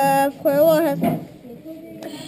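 A child's voice in a long, sing-song vocal sound without words, its pitch gliding up and then down, followed by a second, shorter wavering phrase that ends about a second in.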